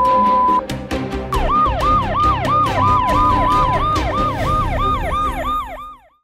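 Crime-news segment bumper: music with a regular beat and a synthetic police-style siren yelping up and down about three times a second, starting about a second in, over a steady held tone. It cuts off abruptly at the end.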